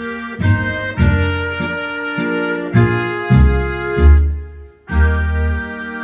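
Accordion played through the Turbosounds app, with a trumpet-like lead voice carrying the tune over pulsing bass notes. The music drops out briefly about four and a half seconds in.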